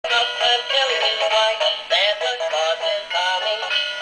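Animated flying Santa Christmas decoration playing a sung Christmas song through its small built-in speaker. The sound is thin, with no bass.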